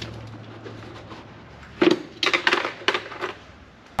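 Hard plastic knocks and clacks as a car's intake air box is handled and lifted out of the engine bay: a burst of five or six sharp knocks in the second half.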